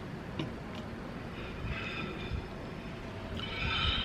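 Steady low outdoor rumble with a faint high-pitched squeal heard twice, once in the middle and again just before the end.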